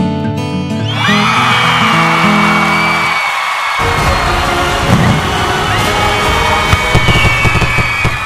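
Acoustic guitar music that ends about three seconds in, overlapped from about a second in by rising, then held, high whistles over a dense crackle. From about four seconds in comes a thick run of irregular bangs and crackling, typical of a fireworks display.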